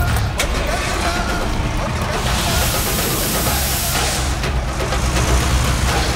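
A bus engine started with the ignition key and running with a low, steady rumble, with a hiss of air from about two to four seconds in. Film score music plays over it.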